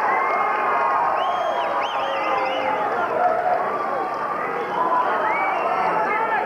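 Arena crowd shouting and cheering, many voices overlapping with high calls rising above them, while a boxer takes a standing count.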